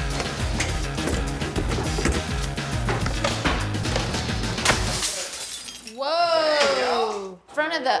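Glass from an oven shattering and demolition crashes over a music track with a heavy bass beat. After the music stops, about six seconds in, a person lets out a long exclamation that falls in pitch.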